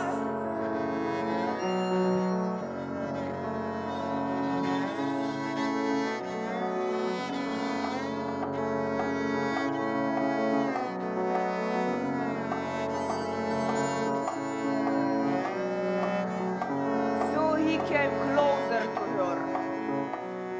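Live band playing slow held chords, bowed strings among them, the harmony shifting every second or two; wavering pitched lines come in near the end.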